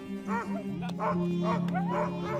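Sled dogs barking and yipping, several short arching calls in quick succession, over a steady low music drone.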